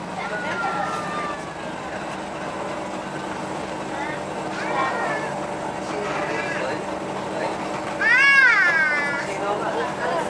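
Background chatter of passengers over a steady low hum, with a loud high-pitched vocal cry about eight seconds in that rises and then falls over about a second.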